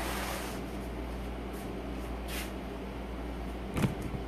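Steady low room hum with no speech, broken near the end by one sharp knock, as of something being handled or set down on the work table.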